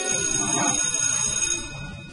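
Electric school bell ringing steadily, then cutting off near the end. Pupils are rising from their desks as it rings, so it marks the end of a class.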